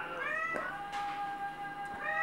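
A ginger-and-white domestic cat gives a short, quiet meow near the start, with a rise and fall in pitch, answering when called by name.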